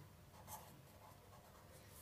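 Very faint sound of a marker pen writing a word on notebook paper.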